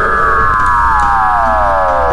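A synthesized, siren-like tone gliding slowly and steadily downward in pitch, part of the video's background music.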